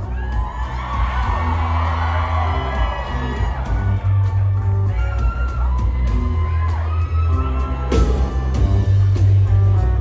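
Live rock band playing with drums, a heavy booming bass, electric guitars and keyboards, heard loud from the audience in a concert hall.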